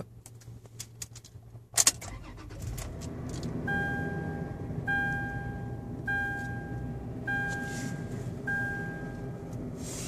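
Keys clicking, then the 2015 Toyota 4Runner's V6 cranks and catches about two seconds in and settles into a steady idle. From about four seconds in, a two-tone dashboard warning chime sounds five times, a little over a second apart.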